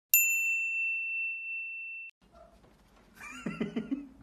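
A single bright ding, a bell-like chime sound effect struck once and ringing steadily for about two seconds before cutting off suddenly.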